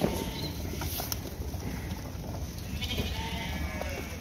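Sheep bleating a few times over a steady low rumble.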